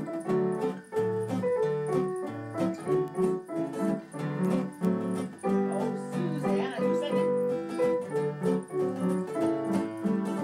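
Upright piano and acoustic guitar playing a tune together, with regular evenly paced notes.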